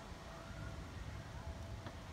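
Quiet outdoor background: a steady low rumble with a faint thin tone above it, and no distinct knocks or clicks.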